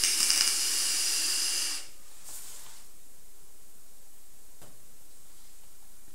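A drag on a Smoant Naboo sub-ohm vape kit: air pulled through the Naboo tank over the firing coil hisses for a little under two seconds and then cuts off. A brief, fainter hiss of breath follows.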